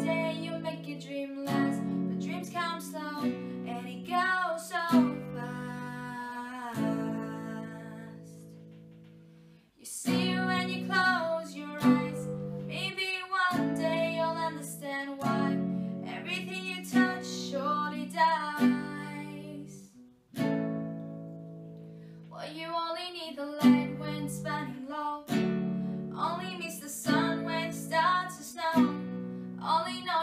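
Small nylon-string classical guitar with a capo, strummed in chords, with a girl singing along. Twice the strumming stops and a chord rings out and fades before she starts again.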